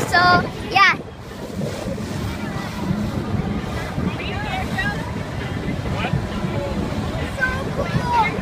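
Steady rushing noise of wind on the microphone and water, with faint voices in the background; a voice speaks briefly at the start.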